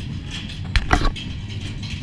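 Two quick knocks in close succession a little under a second in, over a steady low background rumble.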